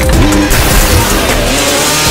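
Motorcycle engine revving hard over a pounding film score, with a loud rushing noise swelling in from about half a second in.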